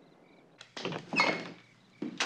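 A front door being opened: a sharp latch click about half a second in, then a louder clunk and rattle of the door that fades away.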